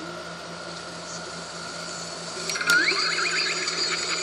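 A steady hum and hiss with a faint steady whine, then about two and a half seconds in a click and a rising swoop as the children's television show's voices and music come back in.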